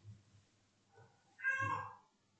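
A single short, high-pitched call of about half a second, rising then falling in pitch, near the end.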